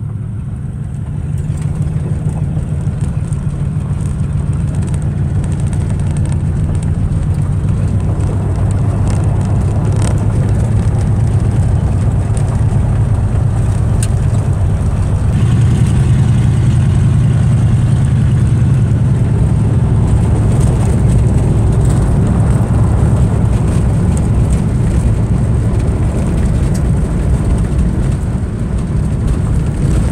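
A 1952 Mercury's flathead V8 running as the car drives on a gravel road, heard from inside the cabin with tyre and gravel noise. The engine note builds over the first couple of seconds as the car gathers speed, then holds steady, with occasional ticks.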